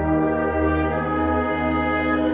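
High school wind band playing sustained chords with the brass to the fore, the harmony shifting about a second and a half in.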